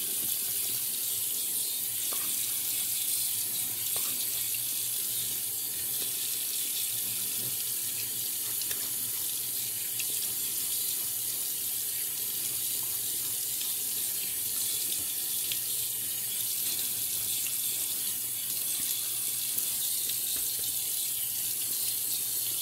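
Bathroom sink tap running steadily into the basin, with water for wetting the face before lathering for a shave.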